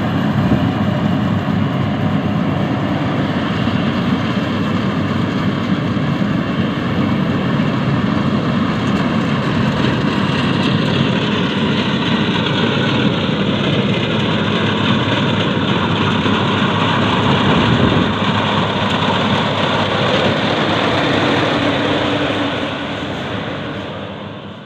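Yanmar YH850 rice combine harvester running under load as it cuts and threshes rice: a loud, steady diesel engine drone mixed with the clatter of the cutting and threshing gear. The sound fades out near the end.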